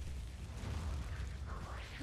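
A steady low rumble from the anime episode's soundtrack, with a faint hiss above it.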